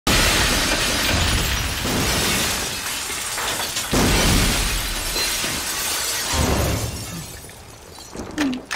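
A glass skylight shattering as it is smashed through from above, with a long spill of breaking and falling glass. A second loud crash comes about four seconds in, and the noise dies away near the end.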